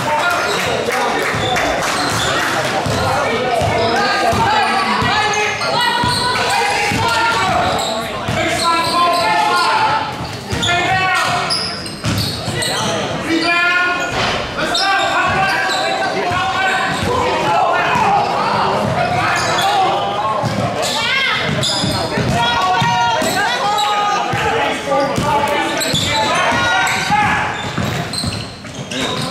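A basketball being dribbled and bounced on a hardwood gym floor during live play, mixed with many voices of players and spectators calling out and chattering in the hall.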